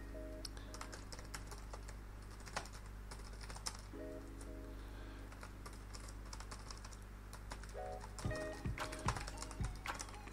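Computer keyboard being typed on: irregular keystroke clicks, coming faster and louder in the last couple of seconds.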